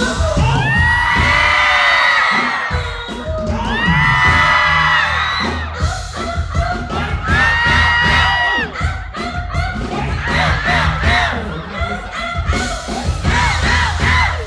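Live pop band music through a stage PA, with the crowd cheering and three long high cries in the first nine seconds, then a steady beat near the end.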